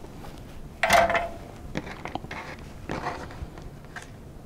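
A single sharp metallic clink with a short ring about a second in, from a soldering iron being set back in its stand, followed by faint clicks and rustles of small wires and a circuit board being handled.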